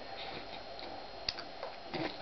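Faint, irregular light ticks and clicks, with one sharper click a little past halfway.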